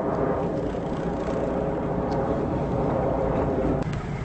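Engines of a 2003 Luhrs 34 Convertible sportfishing boat running steadily at low speed, a continuous drone heard from aboard while maneuvering out of the marina.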